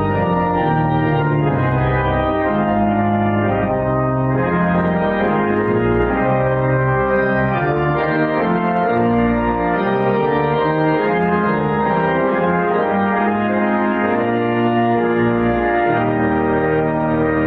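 Church organ playing a slow hymn in held chords, with deep pedal bass notes under the harmony.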